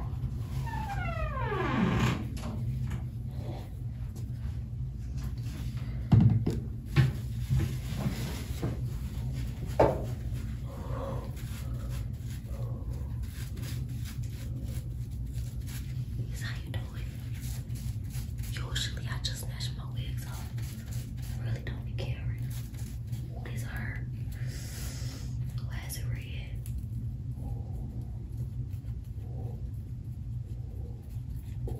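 Faint, indistinct voices over a steady low hum, with a falling swoop in the first two seconds and a few soft knocks, the loudest about six and ten seconds in.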